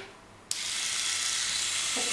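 Braun Face 810 facial epilator running with its soft facial cleansing brush head fitted: switched on about half a second in, its small motor spinning the brush with a steady whirr.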